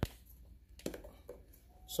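Light plastic clicks and taps as a 3D-printed plastic grid is pressed onto a filter housing: one sharp click at the start, then a few more a little under a second in.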